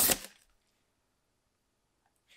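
A brief burst of packaging wrap rustling as the plant is handled, cutting off within the first half second, followed by near silence.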